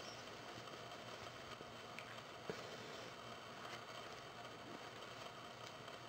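Faint rustling of a cotton preemie onesie being pulled by hand over a vinyl reborn doll's head, with a few soft taps and clicks of handling.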